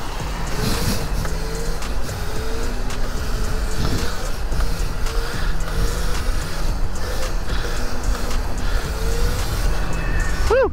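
Steady wind rush on the microphone with road and traffic noise while riding a Sur-Ron electric dirt bike.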